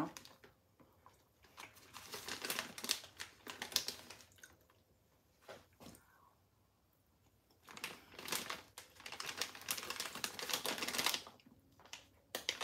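Crinkling of a plastic bag of taco-seasoned shredded cheese being handled and reached into, in two spells of rapid crackling: one from early on to about four seconds in, and another from about eight to eleven seconds in.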